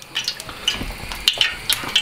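Hot beef dripping crackling around a puffed pork rind as it is lifted out on a metal spoon: scattered sharp crackles and small clicks over a low hiss.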